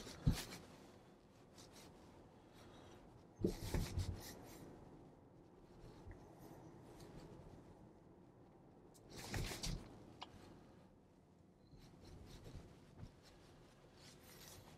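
Quiet interior of a Tesla electric car while driving, with only faint road and tyre noise. Two brief rustling, rattling bursts stand out, about three and a half seconds in and again about nine seconds in.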